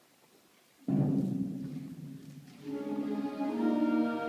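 Concert band of wind, brass and percussion starting a piece: after a moment of silence, a sudden loud low chord comes in about a second in and fades, then sustained wind chords build from near the end.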